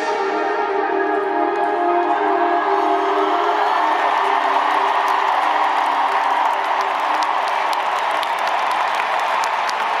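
Stadium crowd cheering and applauding while the song's final held chord fades out. The cheering swells from about three seconds in, and the chord dies away a few seconds later.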